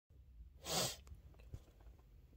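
A man's short, audible breath through the mouth or nose, a single noisy rush lasting under half a second, just before he starts talking, followed by a couple of faint clicks.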